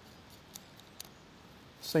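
Two faint, short clicks about half a second apart as the Firecrest 100mm filter holder is fitted onto its mount on the front of the camera lens. Speech starts near the end.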